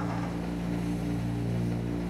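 A steady low drone of several held tones, unchanging in level.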